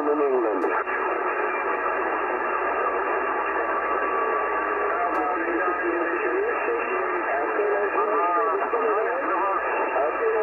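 CB radio receiving a lower-sideband pileup of distant skip stations on 27.385 MHz: several garbled voices talking over one another at once under steady static, with the thin, band-limited sound of single-sideband reception. The crowding is the sign of strong long-distance skip conditions.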